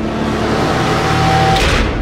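A rushing noise swelling in loudness over a low hum, with a faint steady tone through the middle, cut off abruptly near the end.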